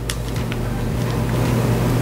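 Steady background hiss with a low hum, and a couple of faint light clicks early on, fitting small plastic toy parts being handled.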